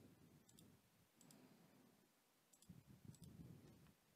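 Near silence: faint room tone with a few soft clicks spread through it.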